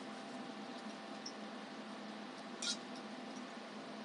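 Steady whir and hum of lab equipment cooling fans, with one short, sharp high-pitched sound about two and a half seconds in.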